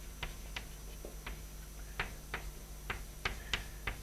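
Chalk writing on a blackboard: a string of quiet, irregular sharp taps as the chalk strikes and lifts from the board between strokes.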